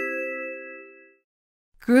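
A four-note rising bell-like chime, its notes ringing on together and fading out by about a second in.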